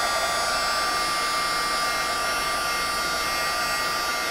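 Marvy embossing heat tool running steadily, its fan blowing with an even whine, as it melts gold embossing powder on cardstock.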